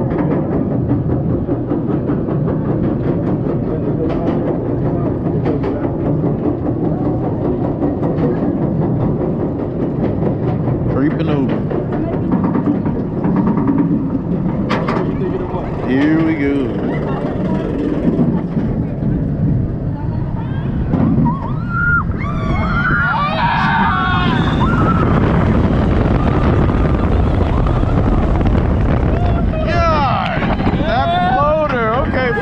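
Apollo's Chariot, a Bolliger & Mabillard steel hyper coaster, climbing its chain lift with a steady mechanical rumble and scattered clicks. About twenty seconds in, riders yell as the train crests and starts the first drop, then wind rushing over the microphone grows loud.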